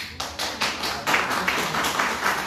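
Audience applauding: a few single claps at first, quickly thickening into steady applause from a room full of people.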